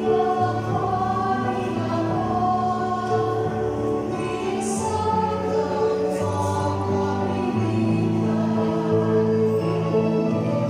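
A mixed choir of men's and women's voices singing a sacred song in parts, with long held notes that change together over a low bass line.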